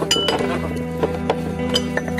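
A glass bottle clinks sharply once, just after the start, then knocks lightly a few more times as it is jostled on a table. Steady background music plays under it.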